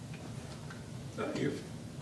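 A short pause in a man's talk, filled with quiet room tone and a few faint ticks. He resumes speaking with a couple of words just past the middle.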